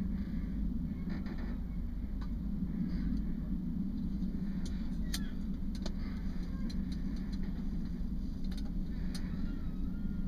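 A lantern being handled as it is lit, giving a few sharp clicks about halfway through and again near the end, over a steady low rumble.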